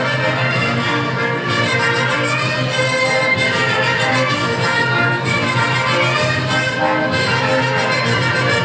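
Band music with brass instruments playing steadily, with no singing.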